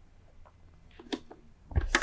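Faint plastic clicks from hands working the pull-down motor-filter grate inside a Miele upright vacuum's bag compartment, with a short louder thump near the end.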